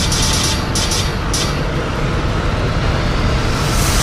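TV channel ident jingle: loud music with sparkling, swooshing sound effects in the first second and a rising swell toward the end.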